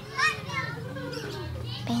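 Children's voices in the background as they play and call out, with one loud, high child's call shortly after the start, over a steady low hum.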